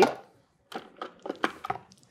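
Light taps and knocks, about six in just over a second, as a crumbly rice-cereal and almond crust mixture is tipped from a plastic food processor bowl into a glass pie plate.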